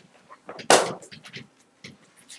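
One loud, sharp crack about three-quarters of a second in, fading quickly, among faint short ticks from a pen being written on a whiteboard.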